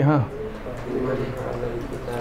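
A man says a brief "haan", then a pigeon coos softly in the background for the rest of the moment.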